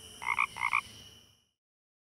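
Sound-effect frog croaks for the Frog Box logo ident: two short cartoon croaks, each a quick double pulse, in the first second. A faint high shimmering tone fades out under them.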